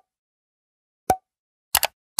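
Short pop sound effects from an animated end screen as its buttons appear: one pop about a second in with a brief ringing tone, then two quick clicks near the end, with dead silence between.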